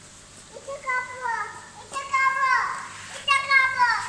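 A toddler's high-pitched wordless vocalizing: three short calls, each falling in pitch at its end.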